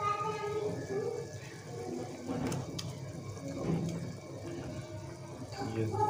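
Beef pieces simmering in broth in a pan while sliced tomatoes are added, with a couple of light taps about two and a half seconds in.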